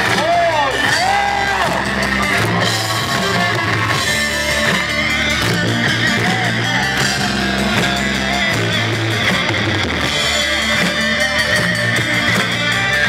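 Live rock band playing loud and steady, led by electric guitars, heard from within the crowd.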